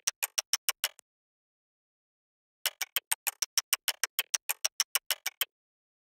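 Percussion loop played back in Ableton Live, a fast even run of sharp clicky hits at about eight a second, with no bass or kick, in straight, rigid timing. It stops dead about a second in, starts again near the middle, and cuts off shortly before the end.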